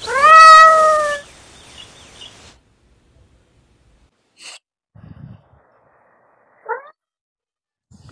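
One loud, drawn-out meow about a second long, rising in pitch and then held, followed by a few faint, short sounds.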